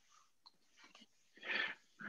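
Near silence on a video-call line, broken by one short breathy noise through a microphone about a second and a half in.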